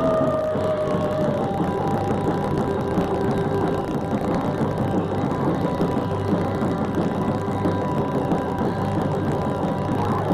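Live rock band playing loud, with long held electric guitar notes ringing steadily over bass and drums.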